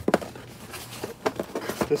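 Hands rummaging through paper items in a cardboard box: a string of short rustles, scrapes and taps against the cardboard.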